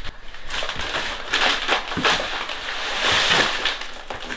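Heavy paper sacks of Quikrete concrete mix being shifted and pulled off a stack: the paper rustles and scrapes, and the dry mix shifts inside. It gets louder about a second and a half in and again near the end.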